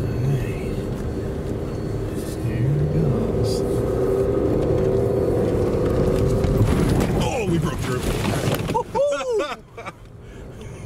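Ram 2500's Cummins diesel engine, heard from inside the cab, pulling hard under acceleration, louder from about two and a half seconds in, over a steady rumble of tyres on snow and dirt. Near the end the truck breaks through the ice of a frozen pond and water splashes up over the windshield, and the sound drops away sharply.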